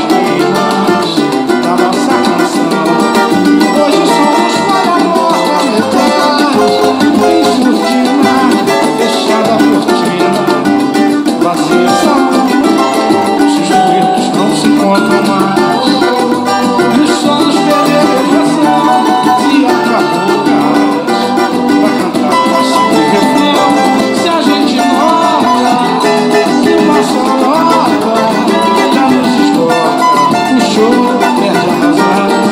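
Cavaquinho being strummed: bright chords on its small steel-strung body, played in a steady rhythm without a break.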